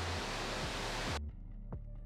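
Television static hiss over low, pulsing background music. The static cuts off suddenly a little over a second in, leaving the music with its short, pitched notes.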